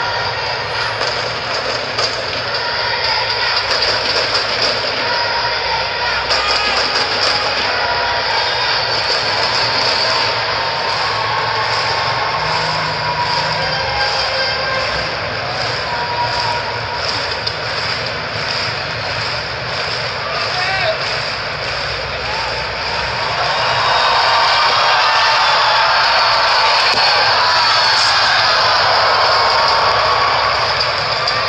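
Stadium crowd noise: a steady din of many voices with slow, even rhythmic clapping through the middle, the kind a crowd gives a long jumper before the run-up. The crowd grows louder about 24 seconds in.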